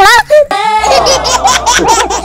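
High-pitched giggling laughter in quick repeated pulses, with a denser, noisier stretch after about half a second.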